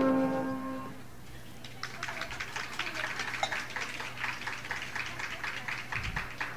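The last held piano-and-flute chord of the song rings out and dies away within the first second. About two seconds in, a live audience starts applauding and keeps clapping steadily.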